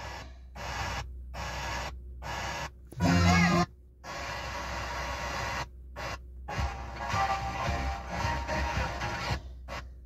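2022 Kia K5 factory FM radio being tuned station by station. Short snatches of music and voices are broken by repeated brief dropouts as the tuner steps between frequencies, with one louder snatch about three seconds in.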